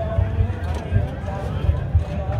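Indistinct background voices and crowd chatter over a steady low rumble.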